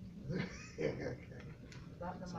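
A person's voice: a spoken word and a short voiced sound, over a faint steady low hum in a small room.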